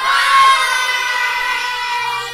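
A class of children calling out a long, drawn-out "goodbye" together, many voices in chorus.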